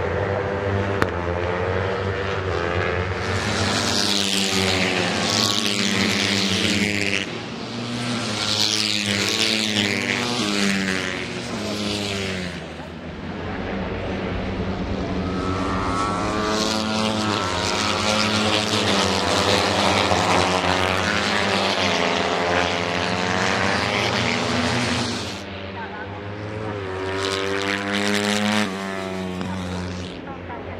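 Racing motorcycle engines at high revs as bikes pass one after another, the pitch sliding up through the gears and falling away, swelling and fading with each pass.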